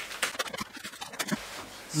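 Packaged groceries handled by hand: plastic wrapping crackling with a quick run of small clicks and scrapes, quieter in the second half.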